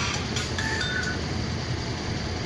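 Vehicle engine idling steadily, with a short two-note high tone a little over half a second in.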